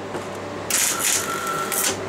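MIG welder arc crackling and buzzing in one burst of about a second, starting just under a second in, over a steady low hum. A bolt is being welded onto a snapped T45 Torx bit to extract it.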